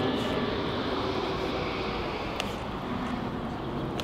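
Airplane passing overhead: a steady rushing drone that swells early on and eases off in the second half.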